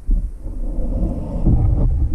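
Churning water rumbling against a submerged camera: a low rumble that starts suddenly and stays loud, as schooling bass swirl up after a topwater lure.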